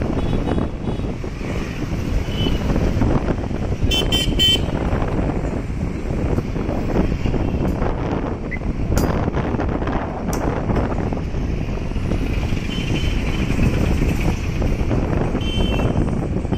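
Street traffic with a steady low rumble of engines and wind. A vehicle horn gives a few short toots about four seconds in, and a horn sounds again near the end.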